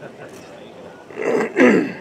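A man clearing his throat in two rough bursts, starting a little past a second in.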